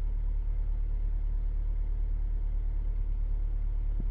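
2016 Honda CR-V's engine idling steadily, a low, even hum heard from inside the cabin.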